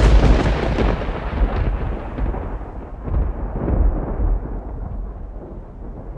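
A thunder-like rumbling boom that starts suddenly and slowly dies away over several seconds, used as a logo sound effect.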